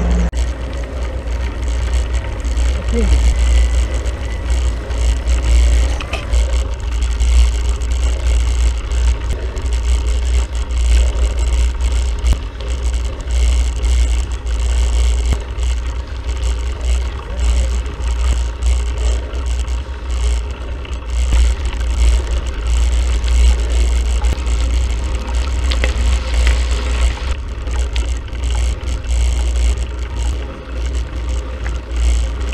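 Wind buffeting the microphone of a bike-mounted action camera while riding along a paved road: a steady low rumble that swells and fades, over a hiss of rolling tyres and air.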